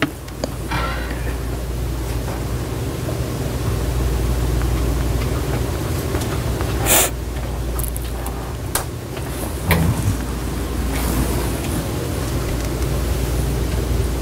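A steady low hum with hiss, broken by a short burst of hiss about seven seconds in and a couple of light clicks a few seconds later.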